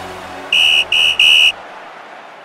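Three loud high-pitched tones, two short and a slightly longer third, sounding over the tail of the closing theme music as it fades out.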